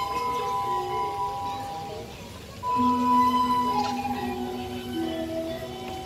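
Balinese gamelan music: slow, sustained ringing notes that step from pitch to pitch, one of them wavering, with a louder low note coming in about three seconds in.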